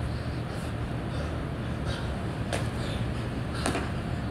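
Burpees on a concrete floor: a few short, sharp slaps and thuds of hands and sneakers landing, about one every second or so, over a steady low hum.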